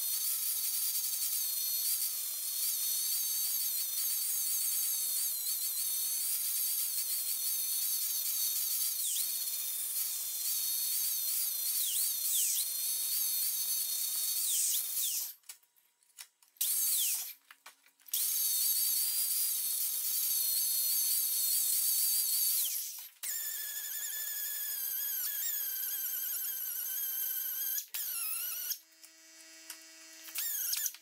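Angle grinder with a yellow-rimmed abrasive disc running at a high whine as it grinds down a TIG weld bead on an aluminium pipe, its pitch wavering as it is pressed against the metal. It cuts out for a second or two about halfway and again near the end.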